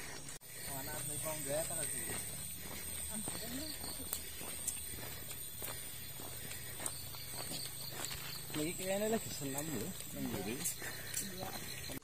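Faint, distant talking from a few people, over a steady low background hum, with a few light ticks scattered through.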